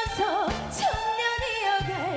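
A woman singing a Korean song into a microphone over a backing track with drums, her held notes wavering with a wide vibrato.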